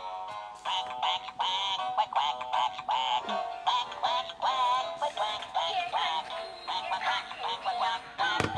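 Animated plush bunny toy playing a song with a synthetic-sounding sung melody through its small built-in speaker, starting suddenly.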